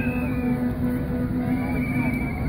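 Music with a steady, held low drone and a couple of short high gliding notes, over a low rumble of background noise.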